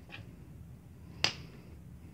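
A single sharp click about a second in, from a hand handling a marker against a ruler on paper, with a fainter tick just before it.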